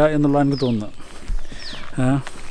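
A bird calling with short whistled notes that slide steeply down in pitch, twice, about a second apart.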